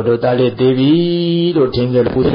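A Buddhist monk's voice chanting a recitation in a few phrases of long, level held tones, the longest held note near the middle.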